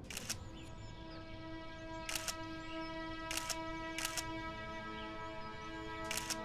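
DSLR camera shutter firing four times at uneven intervals, each a short, sharp click, over soft sustained background music.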